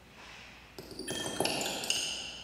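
A quick run of bright, chime-like pings starting a little under a second in. Several high tones pile up into a ringing cluster that is loudest near the end.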